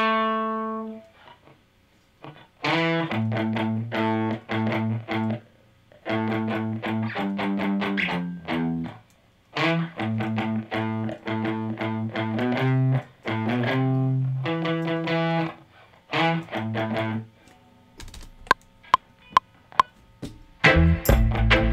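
Electric guitar played through effects, in short phrases of ringing chords broken by brief pauses. Near the end comes a quick run of sharp, evenly spaced clicks.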